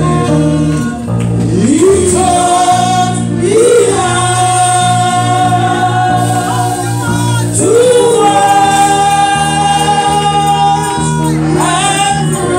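Church singers performing a gospel song through handheld microphones, long held notes with wavering pitch over steady sustained chords underneath.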